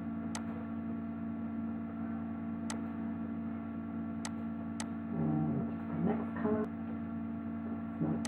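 Steady electrical mains hum with about five sharp computer-mouse clicks, a second or two apart.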